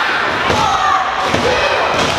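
Thuds from the wrestling ring as the wrestlers grapple on the mat, two sharp ones about half a second and a second and a half in, under voices shouting from the crowd in a large hall.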